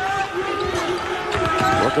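A basketball being dribbled on a hardwood court, heard amid arena crowd noise and voices.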